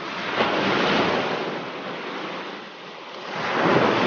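Water rushing and splashing along the hull of a small motorboat under way, with wind on the microphone. The noise swells about a second in and again near the end.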